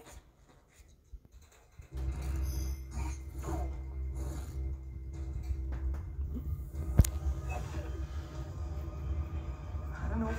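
Dramatic show soundtrack played over theatre speakers: after about two seconds of quiet, a deep rumble with sustained music tones comes in suddenly and runs on, with one sharp crack about seven seconds in.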